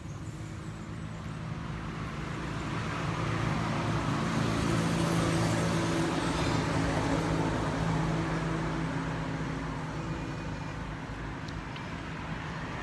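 A motor vehicle's engine passing nearby: a steady engine hum that grows louder to a peak about five seconds in, then slowly fades.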